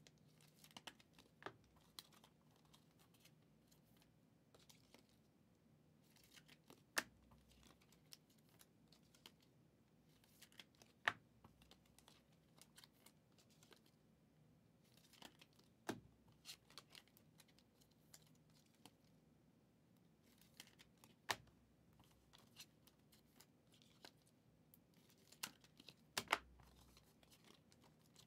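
Football trading cards being handled by hand: faint scattered clicks and snaps as cards are flicked through and set down, with about five louder snaps spread through.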